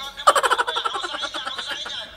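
Two people bursting into hard, rapid laughter about a quarter second in, loudest at the outburst and going on to the end.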